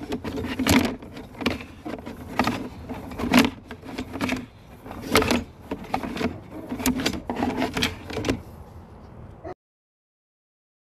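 Sewer inspection camera's push cable being fed by hand down a cast iron vent stack: a run of irregular knocks and rattles, one or two a second, that cuts off suddenly near the end.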